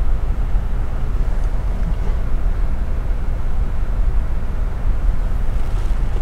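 Steady low rumble of background noise with no distinct events.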